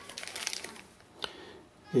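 Plastic bags crinkling as they are handled, in a cluster of soft rustles through the first second, then a single light click a little past the first second.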